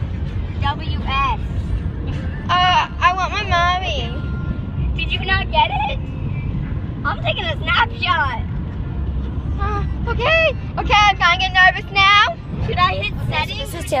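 Girls' voices talking inside a car, over the steady low rumble of the car on the road.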